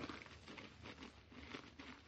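Faint, irregular crunching and rustling: a radio sound effect of footsteps through brush on a hillside.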